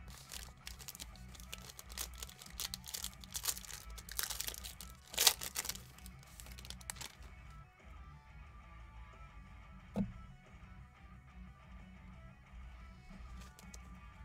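Crinkling and tearing of a trading-card pack wrapper being handled and opened, with the sharpest crackle about five seconds in. After that the handling is quieter, with one click about ten seconds in, over low background music.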